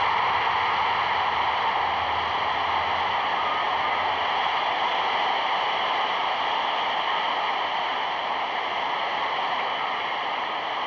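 Steady, even rushing noise with no distinct events, typical of the hiss on an old newsreel soundtrack.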